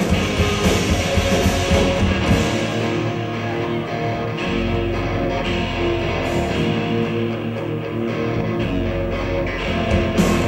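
Live punk rock band playing an instrumental passage on electric guitars, bass and drums. Hard-hit beats open it; about two and a half seconds in, the playing settles into sustained, ringing guitar chords over a steady bass note, with no vocals.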